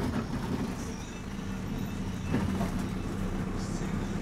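Minibus engine and road noise heard from inside the passenger cabin, a steady low rumble and hum as the bus drives.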